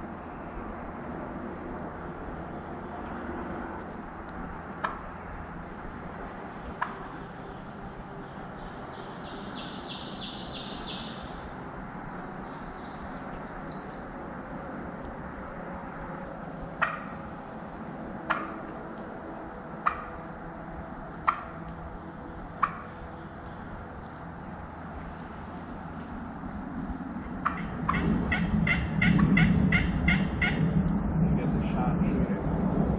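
Wild turkey gobbler gobbling near the end, a loud, rapid rattling call. Before it, a run of short sharp notes about a second and a half apart, and a brief high bird trill.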